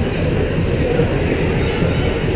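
Ice hockey play heard from right by the goal: a steady low rumble with faint clicks and scrapes of skates and sticks on the ice.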